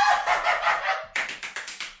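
A man's excited celebratory shout, then a fast run of hand claps, about ten a second, that stops just before two seconds in.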